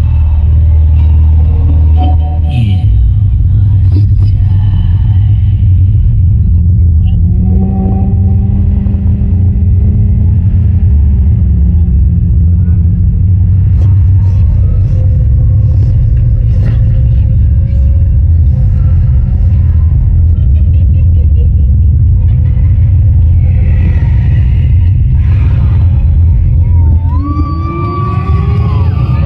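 A loud, deep bass rumble played through a band's sound system, with slow sliding tones over it: a falling slide early on, a held tone around the middle and rising slides near the end. It is a horror-themed passage of a timli band's title piece.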